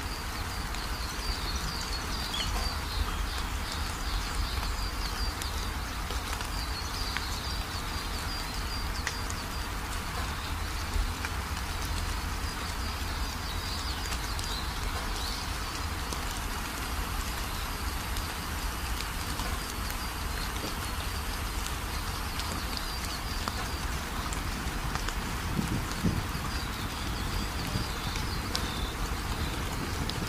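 Outdoor ambience: a steady rushing noise with a low rumble, and birds chirping high up now and then.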